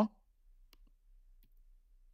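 The end of a man's spoken word right at the start, then near silence broken by a few faint, sharp clicks.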